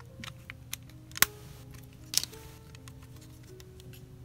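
A few sharp clicks of hard plastic as a small plastic key tightens the short rod into the bottom of a plastic 3D crystal puzzle, the loudest a little over a second in and another about two seconds in. Quiet background music plays throughout.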